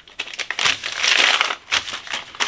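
Kraft paper bag crinkling and rustling in the hands as it is opened to take out a bar of soap, loudest around the middle.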